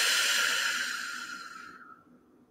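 A woman's long, slow exhale through pursed lips, like blowing out birthday candles: a breathy hiss that gradually fades and stops near the end.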